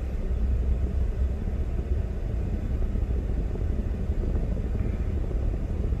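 Low, steady rumble of a Ford F-150 pickup heard from inside the cab as it backs up slowly.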